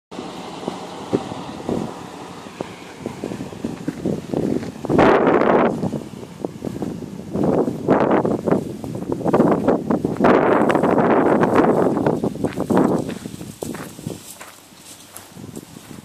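Wind buffeting the microphone in gusts, loudest about five seconds in and from about seven to thirteen seconds in, with leaves rustling close by; it eases off near the end.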